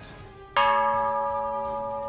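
A hanging bronze Japanese temple-style bell (bonshō) struck once with a wooden mallet about half a second in, then ringing on with a long, slowly fading tone.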